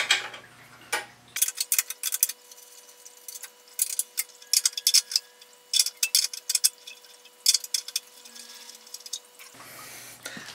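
A 10 mm wrench working loose the small steel bolts that hold the fuel tank on a small engine: runs of quick, light metallic clicks and clinks with short pauses between.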